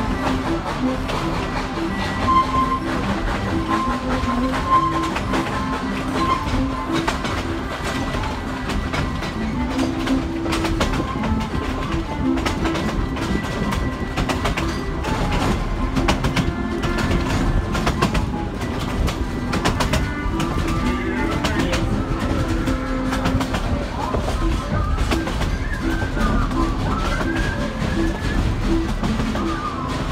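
Narrow-gauge passenger train rolling along the track, heard from an open car: a steady low rumble with the wheels clicking over the rail joints. Music plays along with it.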